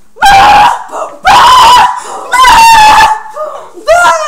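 A girl's voice screaming three times, each scream high-pitched, very loud and under a second long.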